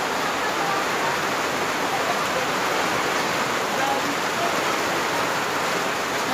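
Steady rain falling, a constant even hiss with no let-up.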